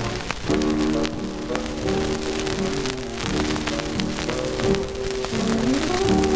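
Dance orchestra playing slow, held chords, heard from an old 16-inch transcription disc under constant crackle and hiss of surface noise. The music dips briefly and a new chord comes in about half a second in.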